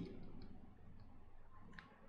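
A few faint clicks, with one sharper click near the end: a stylus tapping and writing on a pen tablet.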